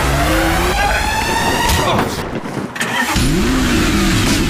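Car engine revving hard as it accelerates, its pitch climbing steadily. The sound breaks off about two seconds in, and a fresh rising rev starts about a second later.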